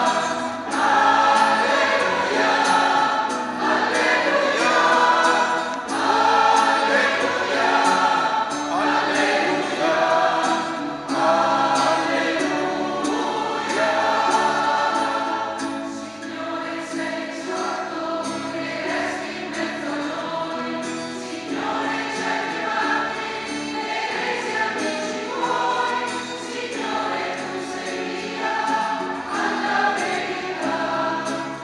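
A mixed church choir singing an acclamation to the word of God, softer from about halfway through.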